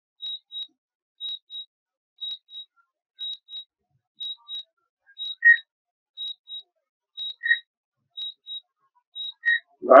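DJI drone remote controller beeping its landing alert while the drone comes down on automatic return-to-home: a high double beep about once a second, joined by a lower single beep every two seconds from about halfway.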